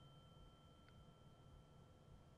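Titanium tuning fork ringing faintly with a steady pure tone and higher overtones, sustaining without dying away: it is less well damped than the beryllium fork, which has already stopped ringing.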